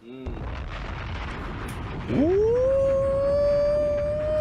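Rap track playback restarting after a rewind: a rumbling swell of noise with a deep boom under it fades in. About two seconds in, a voice-like note slides up and holds.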